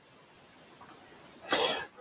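A single short, breathy sound from a man's mouth close to the microphone, about one and a half seconds in, after near silence.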